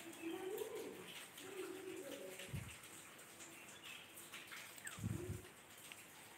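Faint low cooing calls from a bird, several in a row, with short low pulses a couple of seconds apart.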